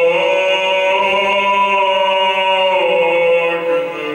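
Choir singing long held chords in steady tones, moving to a new chord a few times.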